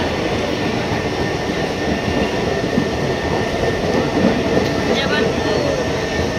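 Indian Railways passenger train coaches rolling past alongside the platform as the train pulls in, a steady, even rumble of wheels on rail.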